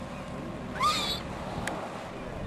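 A killer whale's single short, high call that rises and falls, about a second in, over steady wind and water noise, with a brief click shortly after.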